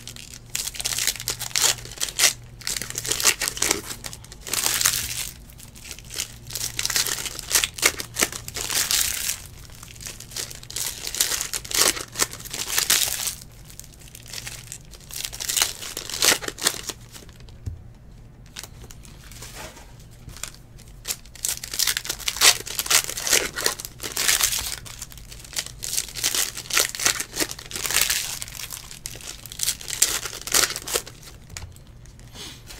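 Foil trading-card pack wrappers crinkling and tearing as packs of 2018 Panini Select football cards are ripped open and handled, in repeated bursts with a short lull a little past the middle.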